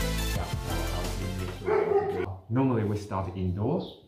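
Background music that stops about two seconds in, followed by a dog barking several times in short, rising-and-falling yelps.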